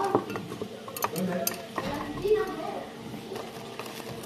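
Coffee capsules clicking and knocking against the side of a clear jar as they are put in and set in place one at a time, a series of separate sharp clicks.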